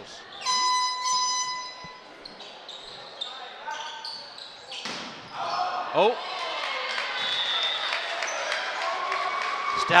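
Indoor volleyball rally in a gymnasium: a held whistle-like tone of about a second and a half near the start, then ball hits off hands and floor. From about halfway through, players and spectators shout and cheer as the point ends.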